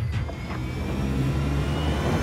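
Free-fall lifeboat sliding down its launch ramp: a steady deep rumble with a faint high whine rising slowly above it.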